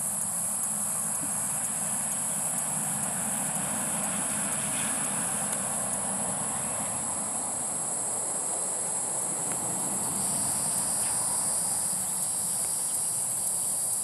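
Steady, high-pitched insect chorus, with a second, lower-pitched insect note joining about ten seconds in, over a faint low background rumble.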